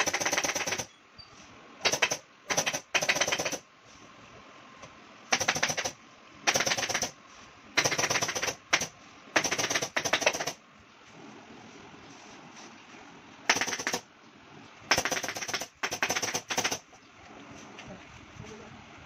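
Pneumatic upholstery staple gun firing in rapid-fire runs, driving staples through foam into a wooden sofa frame: about fourteen short bursts of quick clicks with brief pauses between them.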